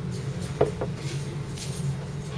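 A pint glass set down on a wooden pub table, with a short sharp knock just over half a second in, over a steady low background hum.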